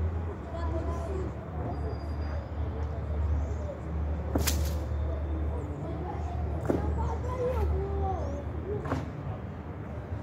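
Faint, distant voices of players on a training pitch over a steady low rumble, with a few sharp knocks, the loudest about four and a half seconds in.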